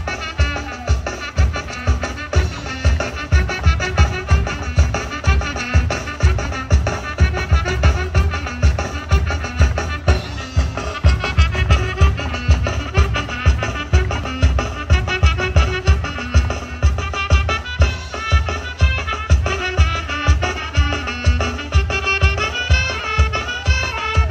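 Upbeat Costa Chica dance music played for the fandango dancers, with a strong, steady bass beat and a melody line running over it.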